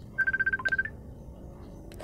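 A short electronic trill: a rapid run of identical high beeps on one pitch, lasting about two-thirds of a second and ending on a slightly higher note.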